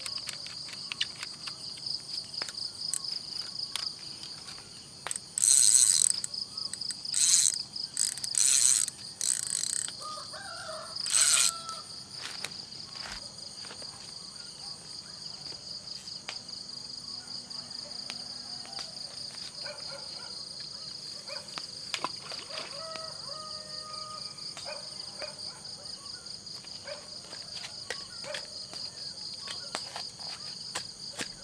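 A steady night chorus of crickets, a continuous high-pitched trilling. Between about five and twelve seconds in, five short, loud rushing noises cut in over it.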